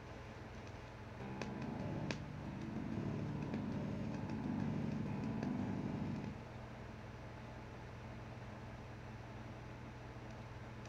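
Electrical hum and buzz from a budget electric bass through its practice amp. It grows louder for about five seconds starting about a second in, with a couple of faint clicks, then drops back to a steady lower hum. This is the noise that comes while the player's hand is off the strings and is killed when he touches them, typical of a poorly grounded or shielded bass.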